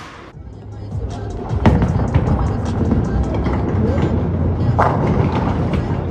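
Bowling ball rolling down a wooden lane with a low rumble, a loud thud about a second and a half in and a crash against the pins about three seconds later.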